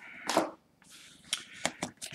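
Paper inserts and a cardboard phone box being handled: a soft paper rustle, then a few light, sharp clicks and taps.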